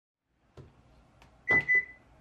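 A couple of faint knocks, then about a second and a half in two sharp clicks a fifth of a second apart under a short, steady electronic beep.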